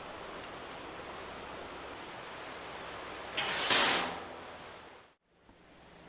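Steady outdoor background hiss. A louder rush of noise swells about three and a half seconds in and fades away, and the sound drops out briefly near the end.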